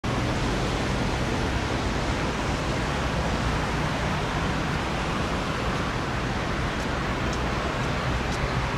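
Steady rushing outdoor city ambience, an even wash of distant noise with no distinct events, and a few faint high ticks near the end.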